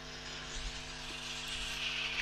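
Faint whirring of a greyhound track's mechanical lure running along its rail, over a steady low hum, growing slowly louder as it approaches the starting boxes.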